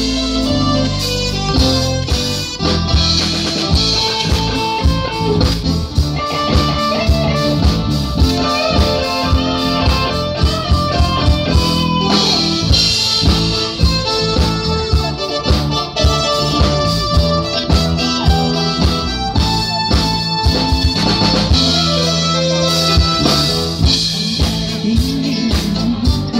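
Live band playing an amplified instrumental introduction, with a drum kit keeping a steady beat under guitar and a melodic lead line.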